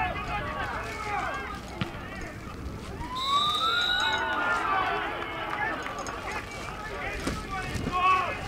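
Footballers shouting and calling to each other across an open pitch, one long drawn-out shout rising about three seconds in, with a short high steady tone under it and a few sharp ball kicks.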